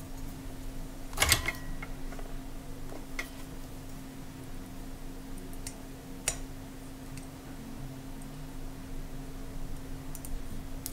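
Small clicks and taps from handling parts at a soldering workbench, over a steady low hum. The sharpest click comes about a second in, and another comes around six seconds.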